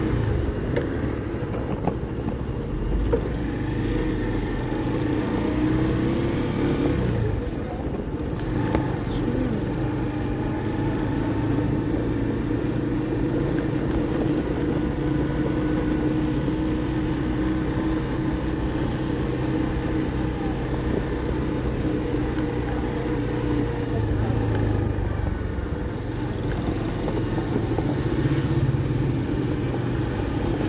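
Motorcycle engine running while the bike is ridden through traffic, its note rising and falling a few times with speed, over the steady noise of the road and nearby cars.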